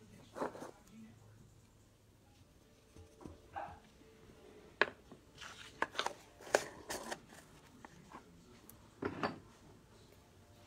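Small bottles and tools being picked up and set down on a table: a handful of sharp clicks and light knocks, bunched together about halfway through, with soft rustles near the start and the end.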